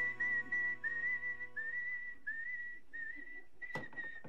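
A man whistling a tune in a run of short notes, several of them sliding up into pitch. A held music chord fades out in the first two seconds, and there is a single sharp knock near the end.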